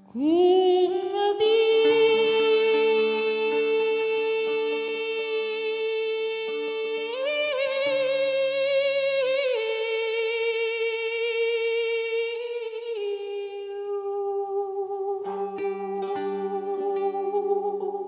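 A woman singing long, slowly held notes in a solo voice, the pitch lifting briefly in the middle and settling a little lower later. Low steady tones sound underneath, with a few plucked string notes near the end.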